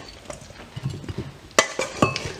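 Metal spoon knocking and scraping in a stainless steel mixing bowl while scooping salad, with soft knocks of food dropping into the serving bowl and one sharp clink about one and a half seconds in.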